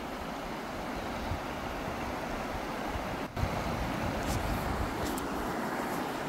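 Shallow, fast-flowing river rushing over rocks, a steady wash of water noise, with wind rumbling on the microphone.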